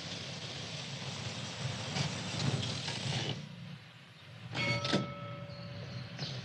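Valiant Charger driving with steady engine and road noise, which falls away a little past halfway as the car pulls up. A few clicks and a brief high ringing squeal follow near the end.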